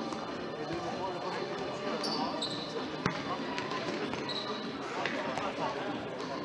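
Futsal ball being kicked and bouncing on a sports-hall floor, with one sharp kick about three seconds in, under the voices of players and spectators. A few short high squeaks, likely from shoes on the court, come around two and four seconds in.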